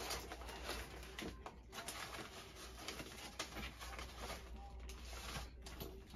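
Items being rummaged through and shifted inside a cardboard box: papers and plastic packets rustling, with scattered light knocks and clicks. A steady low hum runs underneath.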